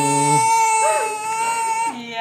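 Infant crying: one long held wail at a steady pitch that breaks off near the end. The baby is stuck lying on her tummy, able to roll onto it but not yet able to roll back.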